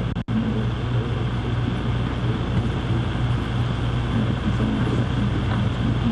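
Steady background hum and hiss of room noise picked up through the podium microphones, with the sound cutting out for an instant about a quarter second in.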